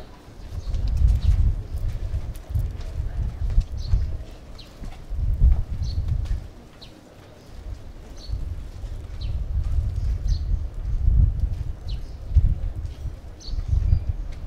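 Wind buffeting the microphone in uneven gusts, a low rumble that swells and drops every second or two. Faint short high chirps sound about once a second over it.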